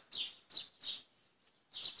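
A small bird chirping: four short, high chirps, the last after a pause of nearly a second.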